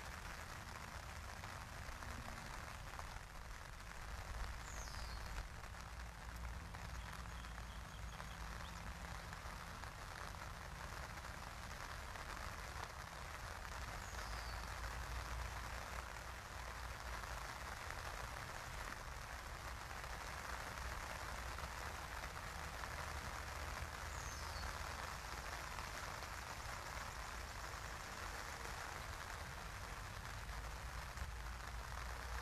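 Steady outdoor ambience by a pond: an even hiss with a low rumble underneath. A faint, short, high descending chirp comes about every ten seconds.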